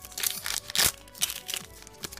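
Foil booster-pack wrapper being torn open and crinkled in the hands: a series of short crackles, the loudest just before a second in.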